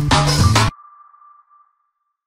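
Electronic intro music with a steady beat that stops abruptly less than a second in, leaving a single high ping that rings on and fades out.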